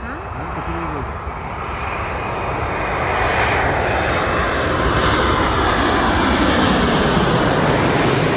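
Boeing 787 Dreamliner airliner on final approach with its landing gear down, its jet engine noise growing steadily louder as it comes in low overhead. The noise is loudest near the end.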